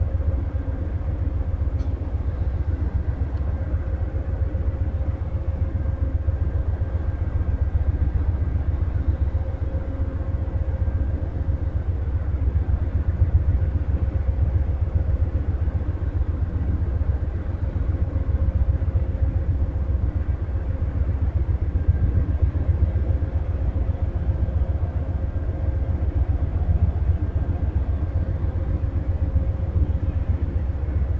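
A standing Amtrak Superliner passenger train idling: a steady low rumble with a faint hum over it.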